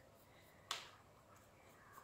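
Near silence: faint room tone, with one light click a little past half a second in.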